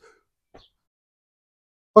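Near silence at an edit between two shots, broken only by one faint, brief click about half a second in.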